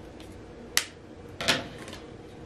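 Scissors snipping through wire-edged ribbon: two sharp snips about three-quarters of a second apart.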